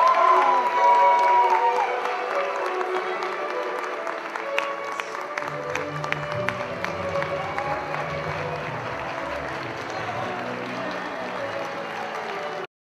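Music playing over audience applause, the applause slowly dying down. A low bass line comes in about halfway through.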